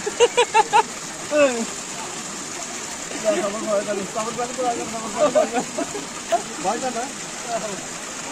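Water from a small natural spring falling steadily over rocks and onto cupped hands, with people's voices talking over it, loudest in the first second or two.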